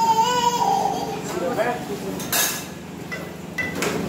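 Indistinct voices of a family talking in a small room, a child's high voice bending in pitch in the first second, with a short clatter like steel plates being handled about two and a half seconds in, over a steady low hum.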